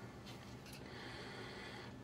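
Quiet room tone with faint, brief handling sounds as a titanium-framed folding knife is turned over in the hands, mostly within the first second.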